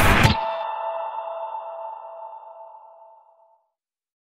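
The intro music breaks off just after the start. It leaves a held, ringing chord that fades away over about three seconds.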